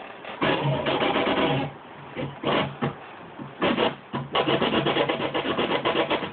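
Record scratching on a turntable with a Traktor Scratch timecode control vinyl: rasping bursts of scratched audio as the record is pushed back and forth. There are a few separate strokes first, then a run of quick back-and-forth strokes in the second half.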